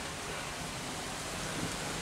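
Steady hiss of road and wind noise inside a smart car rolling slowly along a dirt road.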